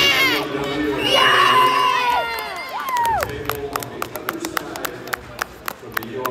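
Spectators shouting and cheering, with long falling yells in the first three seconds, then scattered handclaps.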